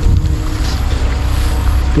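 Wind buffeting the microphone, a steady loud low rumble with no rhythm.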